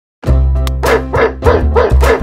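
Small dog barking in quick yips, about three a second, starting about a second in, over background music.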